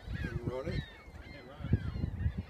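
Geese honking repeatedly in short, bending calls, over a low rumble of wind on the microphone.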